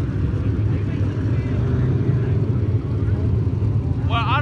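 Engines of steel-block Limited Late Model dirt-track race cars running together around the track, heard as a steady low drone.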